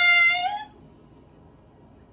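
A high-pitched, drawn-out vocal call on a steady pitch that rises slightly and stops less than a second in, followed by quiet room background.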